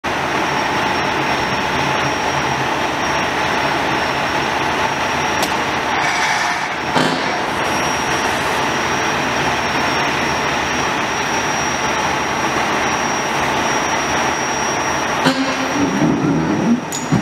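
Steady, dense rumble of vehicle engines and traffic, with a thin high whine over it. A brief knock comes about seven seconds in.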